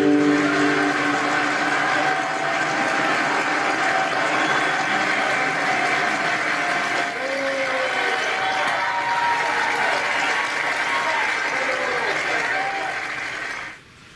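Crowd noise of many overlapping voices from the projected film's soundtrack, a dense steady hubbub that cuts off suddenly just before the end as the film stops.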